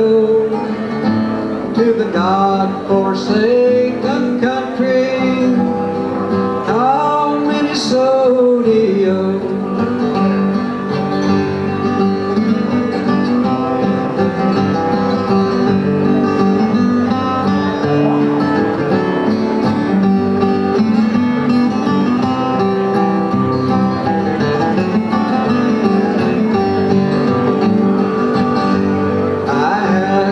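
Two acoustic guitars playing an instrumental break in an old-time ballad.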